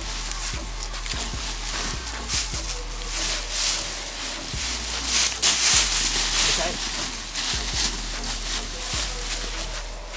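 Dry leaf litter crackling and rustling in irregular bursts as people scuffle and grapple on the ground, loudest about halfway through.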